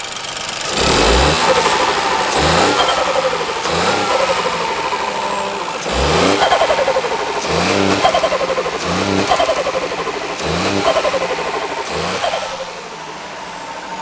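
Ford 1.0-litre EcoBoost turbocharged three-cylinder engine, fitted with an open induction kit and a blanked-off intake hose, blipped to about eight quick revs, each rising and then falling back toward idle.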